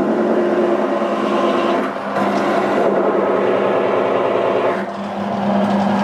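Benchtop drill press motor running with a steady hum, spinning a tin can in a lever-operated can seamer while the lid seam is rolled on. The level dips briefly twice.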